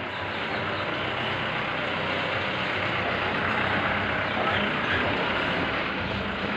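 Steady rain falling, an even rushing noise that holds at one level throughout.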